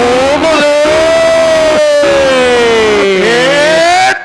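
A long drawn-out vocal holler held for about three seconds, its pitch sinking slowly and then rising near the end, with a second, lower voice in short phrases beneath it.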